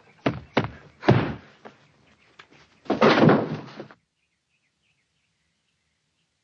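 Gloved boxing punches landing on a film soundtrack: three sharp thuds in quick succession in the first second, then a longer, louder impact noise about three seconds in.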